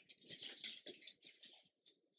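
Soft rustling of paper as a stack of papers is leafed through by hand, a few faint irregular swishes that die away near the end.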